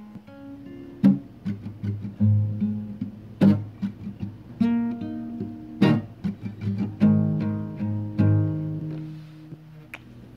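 Acoustic guitar being strummed without singing: sharp chord strokes about once a second, each left ringing, dying away near the end.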